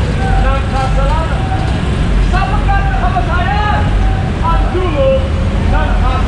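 A man preaching loudly on a busy street, heard over a steady low rumble of traffic and street noise.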